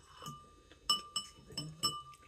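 Metal spoon and fork clinking against a dish while eating: a few sharp clinks in the second half, each with a brief bright ring.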